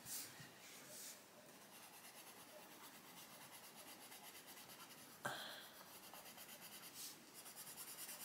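Coloured pencil shading on paper: faint, quick back-and-forth strokes in an even rhythm. A single sharp tap comes about five seconds in.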